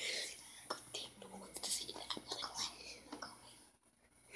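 Faint whispering with scattered small clicks and rustles, fading to near silence just before the end.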